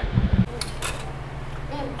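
A short spoken word, then a steady low hum with two faint clicks soon after it starts and a faint voice near the end.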